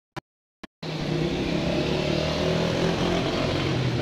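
Two short clicks, then a motor running steadily with a low hum.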